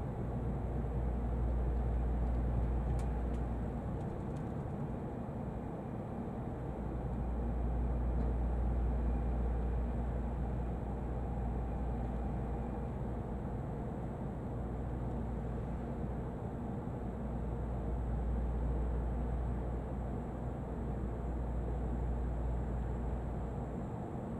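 Cabin noise of an N700-series Shinkansen running slowly alongside a station platform: a steady deep rumble that swells and eases every few seconds.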